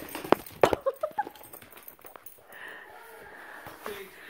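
A few sharp knocks and clicks on a hardwood floor, two loud ones in the first second then smaller ones, as a dog scrambles after and bumps a giant tennis-ball toy; then quieter.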